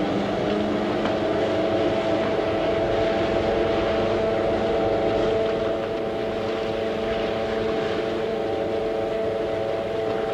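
Crane winch motor sound effect running steadily as it lowers a suspended bathysphere: a level, multi-toned mechanical hum over a wash of machine noise, dropping slightly in loudness about six seconds in.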